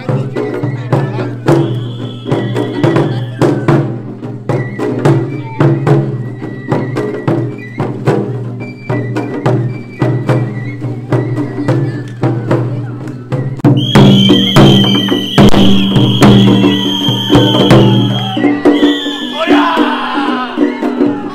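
Japanese festival float music: a taiko drum beaten in a steady repeating pattern, with high held whistle-like notes over it that grow louder in the last few seconds.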